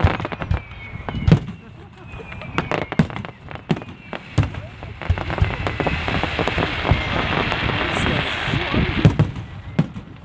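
Aerial fireworks: repeated sharp bangs of shells launching and bursting, with a dense crackling from about five to nine seconds in.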